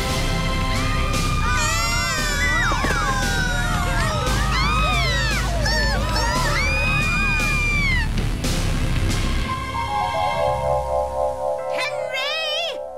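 Cartoon sound effect of a boombox blasting at full volume: a steady heavy bass with a dense tangle of high sliding screeches and wails over it, which stops about eight seconds in. A short music cue of held notes follows near the end.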